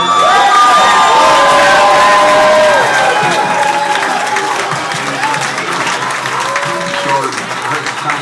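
A crowd cheering, whooping and shouting, loudest for the first three seconds and then easing off.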